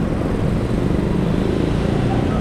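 Steady street traffic noise from cars and motorcycles going by.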